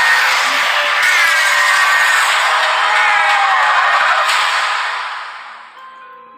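Trailer soundtrack: a loud, dense mix of music and sound effects with a high tone that wavers up and down about once a second, fading out over the last second and a half.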